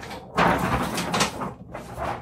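Peel-off backing paper being stripped from a large adhesive bath mat: a long ripping, crackling peel of the sticky liner starting about a third of a second in, with a brief pause near the end.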